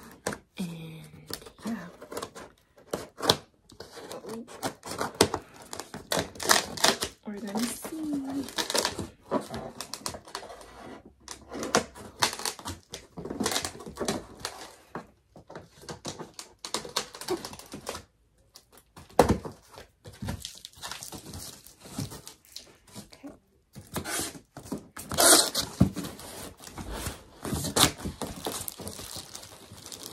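A large cardboard TV box being opened by hand: packing tape and cardboard tearing, flaps and packing knocking and scraping, and plastic bags crinkling, in an irregular run of clicks and rustles with a few short pauses.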